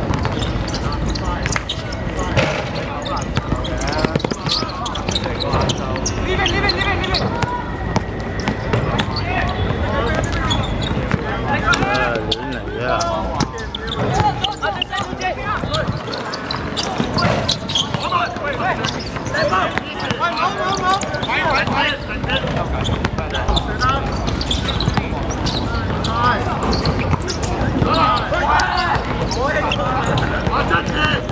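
A basketball bouncing repeatedly on an outdoor hard court during live play, with people's voices calling out throughout.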